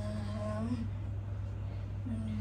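A woman's long, low moaning voice held for under a second, then fading, over a steady low hum. It is a put-on ghost-possession moan.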